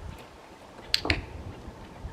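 Dog-training clicker clicked twice in quick succession, press and release, about a second in, marking the puppy's correct stand, with a short spoken 'good' alongside.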